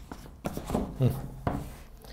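Apple Watch packaging box being closed and set down on a table: rubbing as the lid slides shut and a few short knocks.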